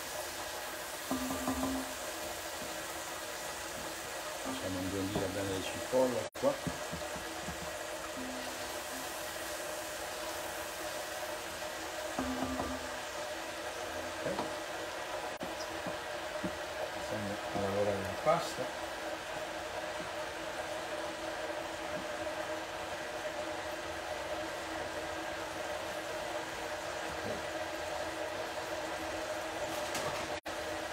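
Onions frying gently in a pan and a pot, a low steady sizzle over a constant hum, with a few short low sounds during the first twenty seconds.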